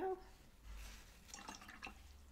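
A watercolour brush being rinsed in a jar of water: faint swishing, then a few small splashes and drips near the end, with a paper towel rustling.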